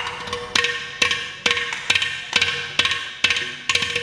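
Carnatic percussion solo (thani avarthanam) on mridangam and ghatam: sharp, ringing strokes about twice a second, each dying away, over a steady drone.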